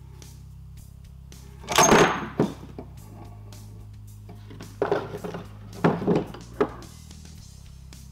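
A three-groove metal belt pulley clunks loudly as it comes free of the electric motor's shaft under a three-legged puller, about two seconds in, followed by a few lighter knocks as the pulley and puller are handled and set down on the bench. Background music plays throughout.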